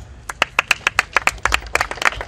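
Crowd clapping: a quick, fast-paced run of sharp, distinct hand claps.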